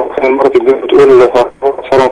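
Speech only: a person talking without pause, with a narrow, phone-like sound.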